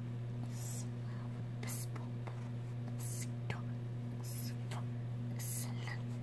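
Felt-tip fabric marker stroking across a cotton t-shirt: short, soft, scratchy swishes about once a second over a steady low hum.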